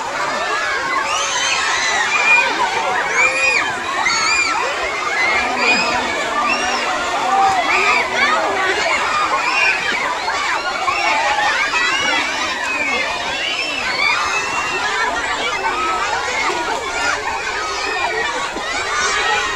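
A large crowd of children shouting and calling over one another without a break, with water splashing as they wade in a shallow muddy pond.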